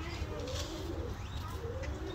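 A caged bird calling in low, wavering notes, in two short phrases.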